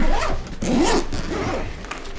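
Zipper on a small soft accessory case being pulled open around its lid, in a few short pulls.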